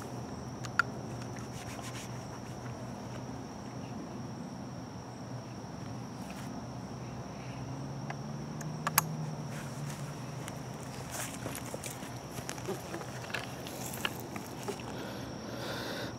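Insects, crickets, trilling steadily at one high pitch, with a few small clicks and rustles of gear being handled in the grass; the sharpest click comes about nine seconds in.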